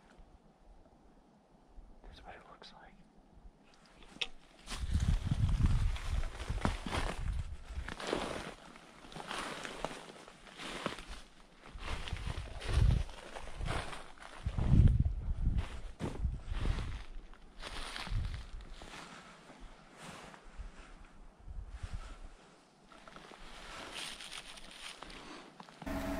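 Footsteps crunching through snow and leaf litter on a forest floor, irregular heavy steps that begin about five seconds in, with brush and clothing rustling.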